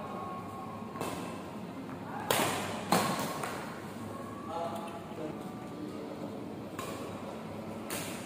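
Badminton rackets striking a shuttlecock during a doubles rally: a few sharp cracks spaced out over several seconds, the two loudest close together between two and three seconds in.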